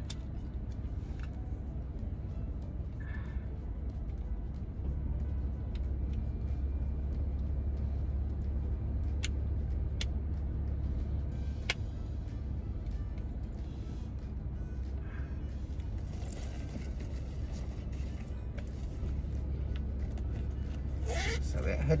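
Steady low hum inside a car's cabin, with a few sharp clicks about halfway through.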